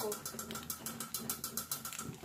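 Metal saucepan lid rattling quickly on a steaming pot, about eight light clicks a second with a steady hum under them, stopping near the end as a hand takes hold of the lid.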